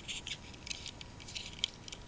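Light, irregular clicks and scratching of fingers handling and turning over a Hot Wheels die-cast toy car.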